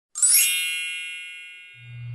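A single bright bell-like chime struck once, ringing with many high tones and fading away over about a second and a half.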